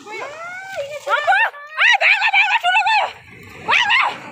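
A dog whining in a run of short, high cries that rise and fall in pitch, with a brief pause and one last cry near the end.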